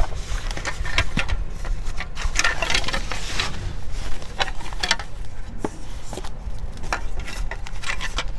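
Crinkling and rustling of foam wrap and a plastic bag being pulled off a new door panel handle, with scattered sharp clicks of plastic parts knocking together, over a low steady rumble.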